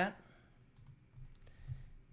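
A few faint, scattered clicks at a computer during a switch between applications.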